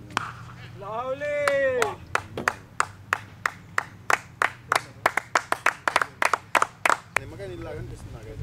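A drawn-out cheer that rises and falls in pitch, then sparse applause from a handful of spectators, quickening as it goes, for a six hit in a club cricket match.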